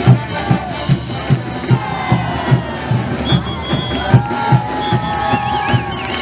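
Tinku band music: a bass drum beating steadily at about two and a half beats a second under long, held melody notes.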